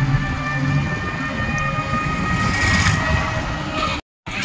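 Battery e-rickshaw (toto) riding over a road bridge: a steady low rumble of wheels and body, with steady high whining tones over it. The noise swells briefly between about two and a half and three seconds in.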